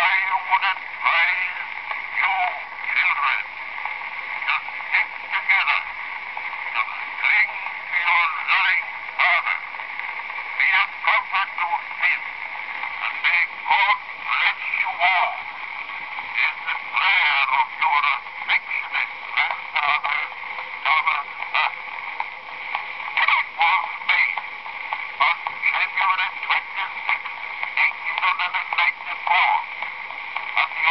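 Spoken voice played back from an 1894 brown wax phonograph cylinder: thin and tinny, with no bass or treble, the words hard to make out under a constant surface hiss.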